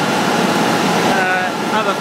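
Wenger X-20 extruder and its plant machinery running, a loud, steady mechanical noise; a man's voice starts talking over it about a second in.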